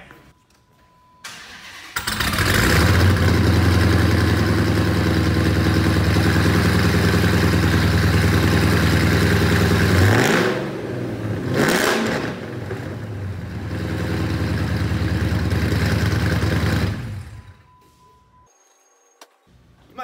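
Supercharged 426 Hemi V8 (6.1-based, with a 2.9-litre Whipple supercharger) in a 2009 Dodge Challenger SRT starting up about two seconds in and settling into a loud, rumbling idle. It is revved twice about ten seconds in, idles again, and is shut off a few seconds before the end. The car is really nasty sounding, more than a stock Hemi.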